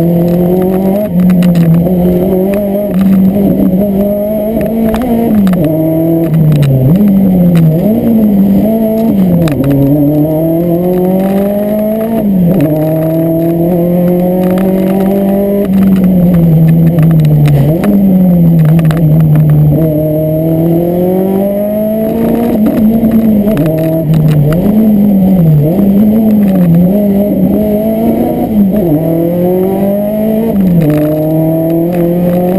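Rally car engine heard from inside the cabin, driven hard along a stage. The revs climb, drop back and climb again over and over, with quick up-and-down changes through corners and occasional sharp clicks and rattles.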